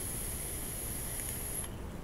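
A Velocity dripping atomizer's 0.12-ohm twisted 26-gauge coil firing at 42 watts, sizzling with thick e-liquid as vapour is drawn through it. It is a steady high hiss that cuts off about a second and a half in, when firing stops.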